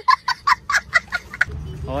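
A small child laughing hard: a rapid run of short, high-pitched bursts of laughter, about five a second, stopping about a second and a half in.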